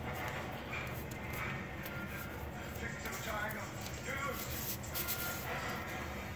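Television playing in the background: voices and some music from a TV programme, heard faintly behind the room. The light rustle and crease of writing paper being folded by hand is mixed in.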